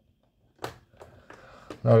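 One sharp plastic click, then a few fainter clicks and rustles: a key being turned in the lock of the Piratix Kraken Ship toy, just before the kraken springs out.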